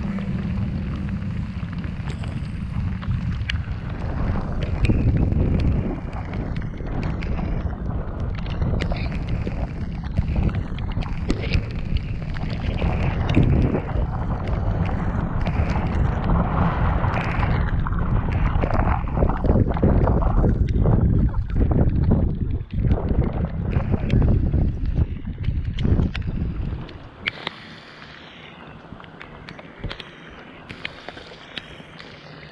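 Strong wind buffeting the microphone of a camera on an open bass boat, a loud, gusting rumble that drops away about three seconds before the end.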